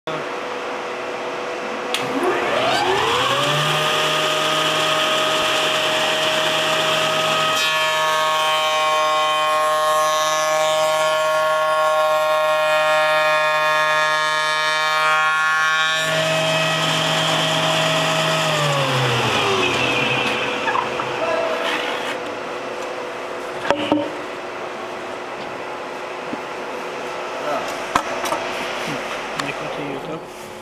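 Freshly overhauled Makina Sanayi FERAH spindle moulder's motor starting about two seconds in, its whine rising as the spindle spins up, then running steadily, with a fuller, richer tone for several seconds in the middle. Near twenty seconds it is switched off and the whine falls away as the spindle coasts down, followed by a few sharp knocks.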